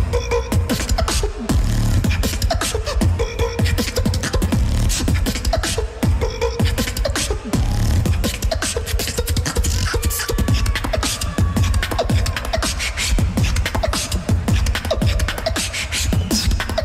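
Competition beatboxing into a handheld stage microphone: a fast, dense drum-style beat of heavy bass with sharp kick and snare clicks.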